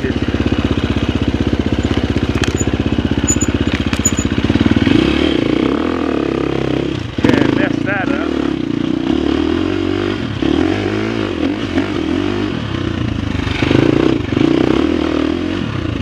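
Husqvarna FX350's four-stroke single-cylinder dirt-bike engine running while riding. It beats evenly at low revs for about the first five seconds, then revs rise and fall with the throttle, with a sudden burst of throttle about seven seconds in.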